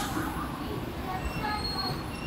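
Steady low rumbling noise with a few brief, faint high-pitched squeals near the end.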